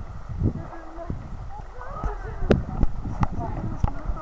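Water sloshing and irregular knocks and bumps as divers in drysuits wade and heave something heavy through shallow water, the sharpest knock about two and a half seconds in, with faint indistinct voices.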